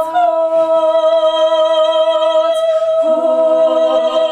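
A small group of women singing a cappella in harmony, holding long notes; the chord changes about three seconds in.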